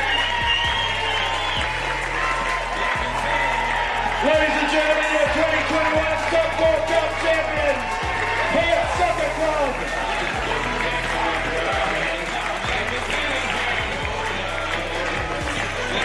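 Music playing, with a group of excited voices shouting and cheering over it.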